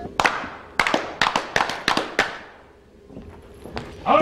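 A quick, irregular run of sharp knocks, about a dozen in the first two seconds, each with a short ringing tail, then dying away, with a couple of faint knocks near the end.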